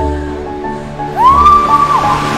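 Background film music: layered held notes, with a higher note that slides up about a second in and is held as the loudest part.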